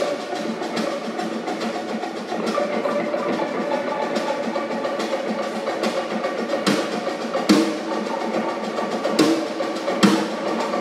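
Live instrumental band: guitarra baiana (electric mandolin) and electric guitar playing over a drum kit. Several hard drum hits stand out in the second half.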